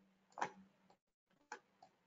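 Two short clicks of a computer mouse about a second apart, the first louder, with near silence around them.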